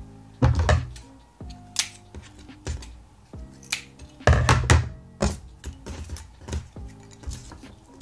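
Background music with thuds and clicks of crafting work on a tabletop, as small styrofoam pieces, scissors and a picture frame are handled; two louder thuds come about half a second and about four and a half seconds in.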